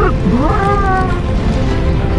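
A cat meowing: one call that rises in pitch and then holds, over a continuous bed of background music.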